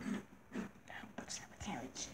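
A child whispering quietly in short bursts.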